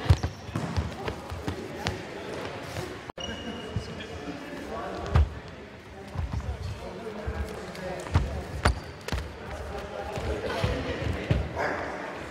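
Free sparring in a sports hall: scattered dull thuds of stepping feet and bodily contact on a wooden floor, with people talking in the background.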